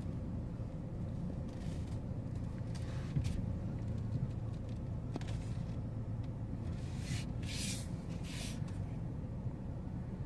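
Chevrolet sedan's engine running gently and the car rolling slowly in reverse, a steady low rumble heard from inside the cabin. A few brief soft rustles come in around two seconds in and again near the end.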